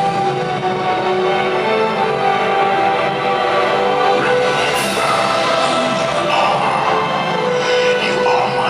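The nighttime water show's soundtrack music, carried on long held chords. A hissing swell rises through it about five seconds in.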